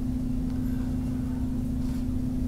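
Steady electrical hum: one low tone with a low rumble of background noise beneath it, the noise floor of the recording, with no distinct events.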